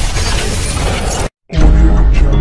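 Dense, crash-like intro sound effect over heavy bass, cutting off abruptly just over a second in. After a brief silence, news-title music with deep bass starts.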